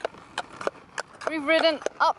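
Horse hooves clip-clopping at a walk on a paved road, a few separate strikes, then a horse whinnies with a wavering call from about a second and a quarter in.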